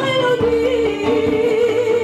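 Live band music: one long sung note with a wavering pitch, held over electric guitar, bass guitar, congas and keyboard.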